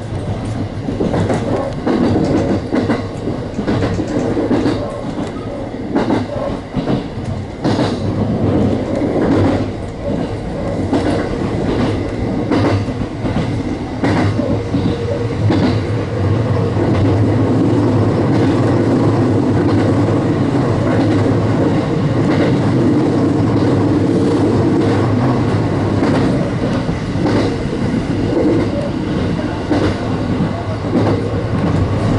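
Electric train running along the track, heard from the front of the car: irregular clacks from the wheels over the rails in the first half, then a steadier, slightly louder running hum from about halfway on.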